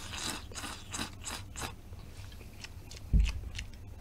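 Close-miked eating of wide starch noodles from a bowl: a quick string of short wet slurping noises in the first second and a half, then softer chewing, with a low thump about three seconds in.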